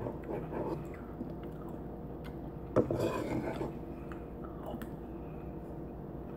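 A person chewing a mouthful of Oreos soaked in milk, with a metal spoon knocking and scraping now and then in a ceramic bowl. A short sharp knock comes about three seconds in.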